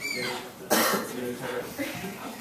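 A person coughing once, sharply, under a second in, over low voices in the room.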